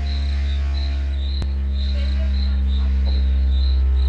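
A loudspeaker plays a steady low bass test tone in the 60–80 Hz range that slowly grows louder, gliding down in pitch as a frequency-response test. A cricket chirps about two to three times a second over it, and there is one short click about a second and a half in.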